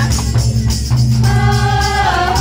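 A group of women singing a Sadri wishing song together through a microphone, over a heavy pulsing bass beat and jingling percussion. The voices drop out briefly and come back in just over a second in.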